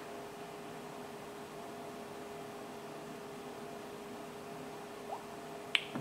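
Quiet room tone: a faint steady hiss with a low electrical-sounding hum, and a single short click shortly before the end.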